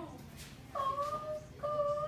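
A woman crying with emotion, two drawn-out high-pitched sobbing wails, each a little over half a second long and rising slightly in pitch.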